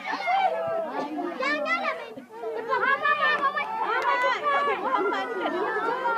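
Many children's voices shouting and calling over one another, a steady jumble of high-pitched cries with a brief lull a little after two seconds in.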